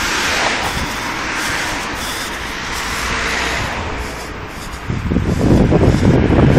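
Road traffic passing on a nearby road, a hiss of tyres and engines that swells and fades. About five seconds in, a louder low rumble of wind on the microphone comes in.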